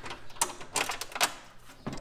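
Irregular sharp metallic clicks and taps from a heater mounting bolt being handled and tried against its rivnut, which he thinks is stripped.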